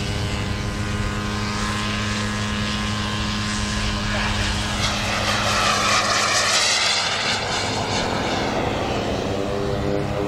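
Turbine-powered giant-scale Hawker Hunter RC jet making a fast pass. Its jet whine swells to its loudest about six seconds in, with a sweeping swoosh as it goes by, then fades.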